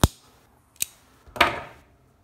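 Sharp clicks from a chrome jet-flame torch lighter, one right at the start and a thinner one a little under a second in. A louder clack with a short ringing tail follows about a second and a half in.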